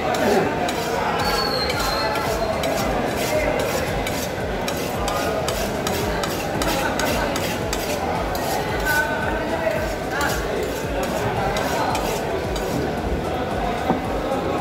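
Knife being honed on a sharpening steel in quick, regular scraping strokes, about two or three a second, over the murmur of voices in a busy hall.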